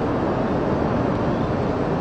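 Steady rushing noise of strong wind carrying the roar of the tornado. It is even and unbroken throughout.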